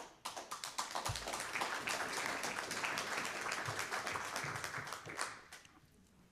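Audience applauding: many hands clapping together, starting at once and dying away near the end.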